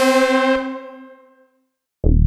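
Behringer DeepMind 12 analog polyphonic synthesizer playing a brass-style patch: a held chord rings out and fades away within about a second and a half.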